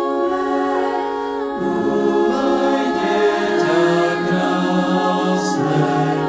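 A church choir singing unaccompanied, holding long chords that move to new ones every second or so.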